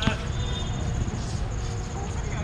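Basketball players' voices calling out on the court, with a short shout right at the start. Under them runs a steady low rumble and a faint high steady tone.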